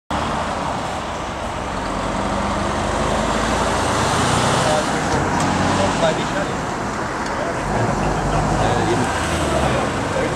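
Steady road-traffic noise with the low hum of idling heavy diesel engines, and indistinct voices in the background.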